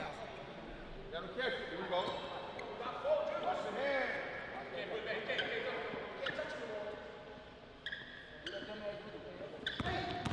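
A basketball dribbled on a hardwood gym floor, with men's voices ringing in a large gym hall.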